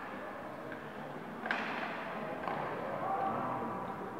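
Ice hockey rink ambience: a murmur of spectators and distant calls from the players, with a sharp clack of stick and puck about one and a half seconds in and a lighter one a second later.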